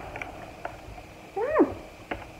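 Faint clicks of a metal fork against a plastic cake container, and about one and a half seconds in a short, pitched vocal call that rises and then falls in pitch.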